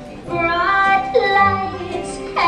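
A recorded woman's voice singing a slow country ballad over band accompaniment. The voice comes in about a quarter second in with notes that slide and bend in pitch.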